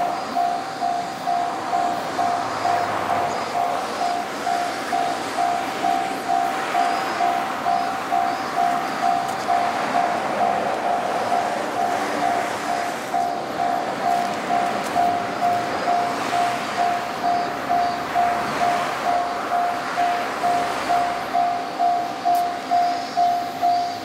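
Japanese level crossing warning bell ringing steadily, two alternating electronic tones at about two strikes a second: the crossing has been tripped by an approaching train.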